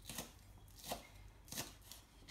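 Kitchen knife slicing a spring onion into small discs on a chopping board: three short cuts about two-thirds of a second apart.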